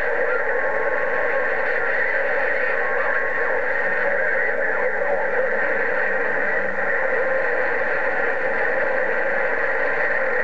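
Steady static from an HR2510 radio's speaker tuned to 27.085 MHz with no one transmitting, a constant hiss with faint steady tones in it.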